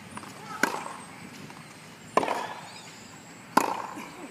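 Tennis ball struck back and forth by rackets in a rally: three sharp pops about a second and a half apart, the last the loudest.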